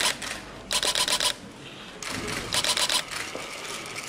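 Camera shutters firing in rapid bursts, three short runs of quick clicks about half a second long each, as photos are taken of a certificate handover and handshake.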